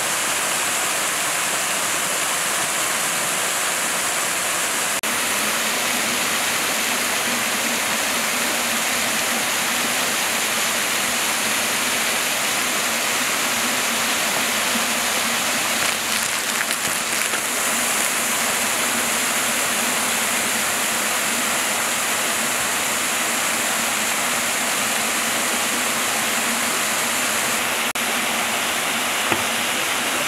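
A waterfall pours into a river with a steady, unbroken rushing of falling water.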